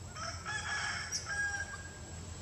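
A single drawn-out animal call, about one and a half seconds long, ending on a held high note.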